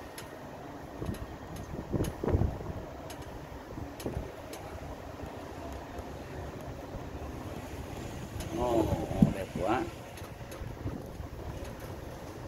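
Wind and road noise inside an open-sided shuttle bus driving along a street, with a few knocks around two seconds in. A brief voice is heard about nine seconds in.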